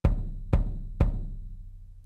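Three single drum hits from the Abbey Road 60s Drums sample library, about half a second apart, each with a deep low end that dies away. The room and overhead mics are muted and snare bleed is off, so each piece sounds dry, through its own close mic only.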